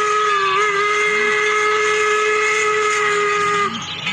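Steam locomotive whistle blowing one long, steady chord-like blast, with a slight dip in pitch about half a second in, cutting off near the end.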